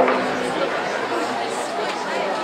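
A large crowd of men talking at once in a dense, even babble, with one loud shout right at the start.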